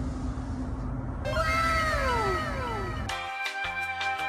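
A steady low room rumble, then, after an abrupt edit, a sound effect of several overlapping meow-like cries, each falling in pitch. About three seconds in, background music with a beat takes over.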